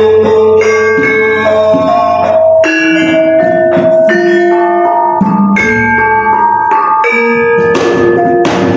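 Javanese gamelan ensemble playing: bronze metallophones ring out a melody of struck notes, each note held and ringing into the next, with strokes on the kendang hand drum.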